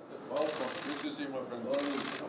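Rapid clicking of press camera shutters, with men's voices exchanging greetings under it. The clicks start about half a second in and get louder near the end.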